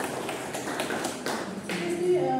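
A small group of people applauding, a dense patter of hand claps.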